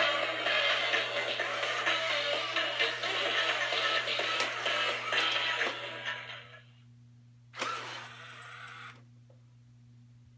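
WowWee Robosapien V2 toy robot playing its dance music through its built-in speaker during a dance routine, which the owner takes as the sign of a prototype circuit board. The music fades out about six and a half seconds in, and a short noisy burst follows about a second later, lasting just over a second.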